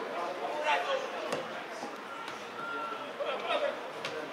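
Footballers' voices calling out across an open pitch, with a sharp thud of a football being kicked a little over a second in.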